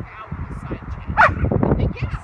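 A dog barks once, a short pitched bark about a second in.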